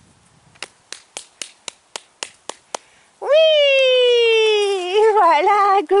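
A quick, even run of about nine light clicks, roughly four a second, followed about three seconds in by a long, slowly falling 'ohhh' in a woman's high, coaxing voice that breaks into short syllables near the end.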